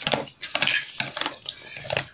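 Wooden chopsticks clicking and scraping against a plastic tray of noodles, in quick, irregular taps.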